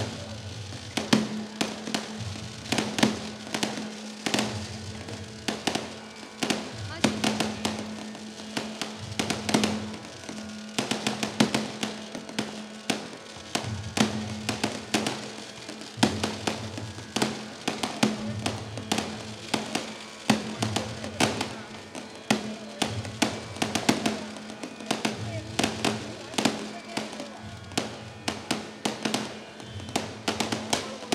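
Aerial fireworks bursting in a continuous barrage, dense sharp bangs and crackles several times a second. A steady low drone runs underneath.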